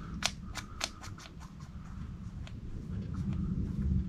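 Small sharp clicks as the piston of a Stuart oscillating model steam engine is slid in and out of its freshly oiled brass cylinder by hand: four quick clicks in the first second, then a few more spaced out, over a low steady hum.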